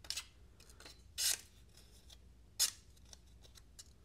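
Spyderco Vallotton Sub-Hilt folding knife's hollow-ground S30V blade slicing through sheets of paper. There are a few short slicing strokes, the two loudest about a second and about two and a half seconds in, with faint paper rustles and ticks between.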